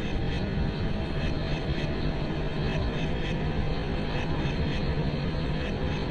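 Steady low droning rumble with a faint regular pulse, about three beats a second, under a constant low hum.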